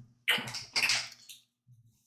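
Knife cutting a red onion on a wooden cutting board: a couple of short crunchy cuts in the first second and a half.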